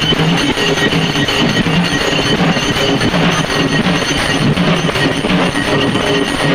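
Loud, dense, continuous drumming on rope-tensioned procession drums.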